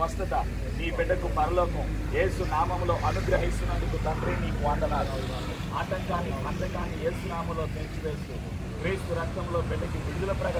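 Quiet voices talking, over a low rumble that fades away about seven seconds in.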